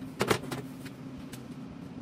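Steel electrical enclosure set down on a metal-topped workbench: two quick sharp clanks about a quarter second in, over a steady low hum.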